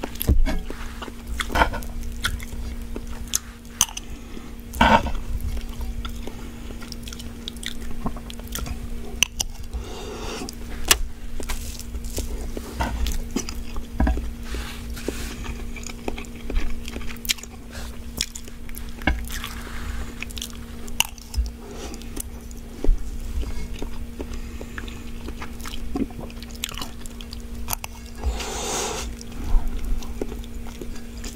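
Close-miked chewing of fried instant ramen noodles: irregular moist clicks and crunches from the mouth. A steady low hum runs underneath.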